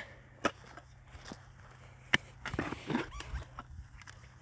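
A hand digging tool working in stony soil: scraping, with a few sharp knocks of metal striking stones, the sharpest about two seconds in and a flurry of smaller knocks and scrapes after it.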